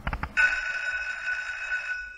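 Synthesized logo-intro sound effect: a quick stutter of clicks, then about half a second in a loud, steady electronic tone of two pitches over a hiss.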